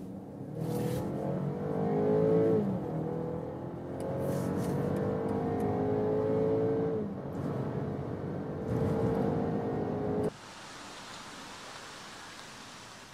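BMW X3 xDrive30i's 2-litre four-cylinder petrol engine accelerating hard from inside the cabin, its note rising through three pulls with a drop at each upshift. It cuts off suddenly about ten seconds in, leaving a faint hiss.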